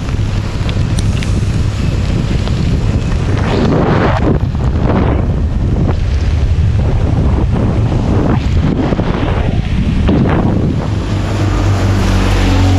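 Wind rushing over the microphone of a camera on a moving scooter riding through rain, over a steady low rumble. Louder swells come about four, five and ten seconds in.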